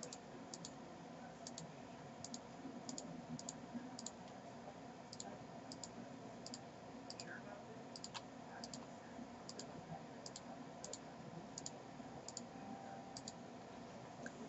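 Computer mouse button clicking: about twenty faint clicks spaced roughly half a second to a second apart, each a quick paired tick of press and release.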